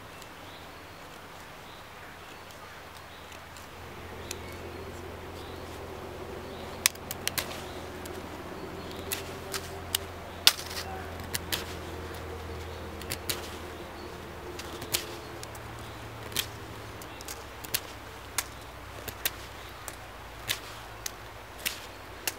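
Flat-ground carbon-steel knife (TLIM C578) whittling a small stick: irregular sharp snicks of the blade cutting through the wood, starting a few seconds in, sometimes in quick pairs. A faint steady low drone sits underneath through the middle.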